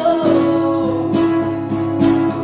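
A 12-year-old girl singing her own ballad to her strummed acoustic guitar: a held sung note slides down in pitch over the first second and a half while the guitar chords ring under it.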